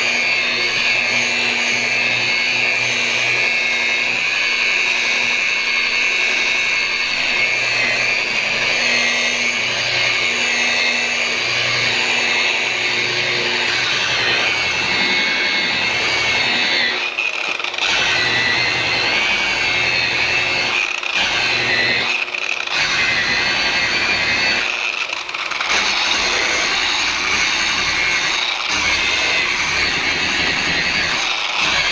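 DeWalt rotary polisher with a wool pad running at a low speed of about 600 RPM while buffing polish into car paint: a steady electric-motor whine with a low hum underneath. The sound wavers briefly a few times in the second half.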